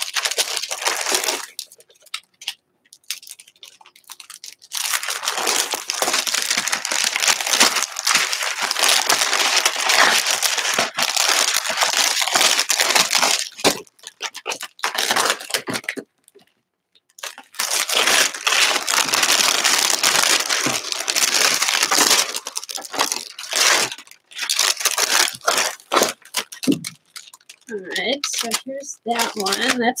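Clear plastic packaging on a craft stencil crinkling and tearing as it is unwrapped and the stencil pulled out, in two long stretches with a brief pause about halfway through.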